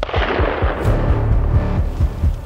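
A hunting rifle shot right at the start, its report echoing away over about a second, under music with a steady low beat.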